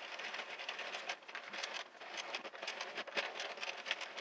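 Addi 46-needle plastic circular knitting machine being cranked by hand, its needles clicking and clattering quickly as the cylinder turns, during the cast-on.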